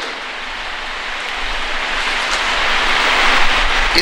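A steady hiss of noise that grows gradually louder.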